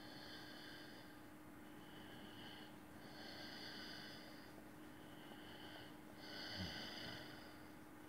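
A man's faint nasal breathing, slow and even, with a slight whistle on each breath, about six breaths in and out, each lasting about a second.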